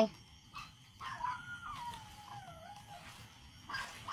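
A dog whining in the distance: one long wavering whine that slides down in pitch over about two seconds.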